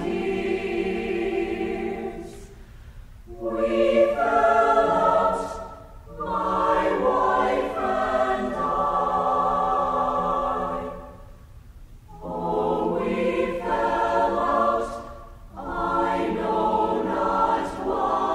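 Mixed SATB choir singing a cappella in slow, held chords, phrase by phrase, with short pauses between phrases and the longest break a little past the middle.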